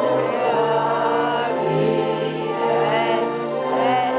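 A crowd of people singing together in unison, with long held notes over an instrumental accompaniment.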